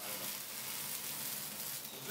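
Food frying in a pan: browned pieces and sliced onions sizzling steadily in hot oil.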